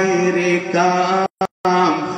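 A man's voice chanting in long, held melodic notes into a microphone, in the sung style of a sermon. The sound cuts out completely for a moment about two-thirds of the way through.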